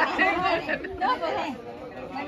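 Several people talking over one another: party chatter.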